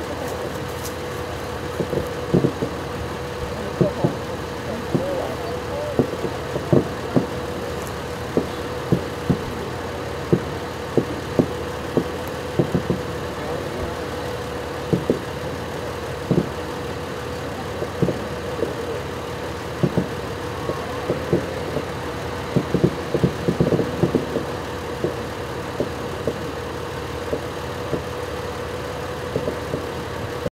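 Fireworks going off at a distance: irregular dull thumps, about one or two a second, over a steady hum.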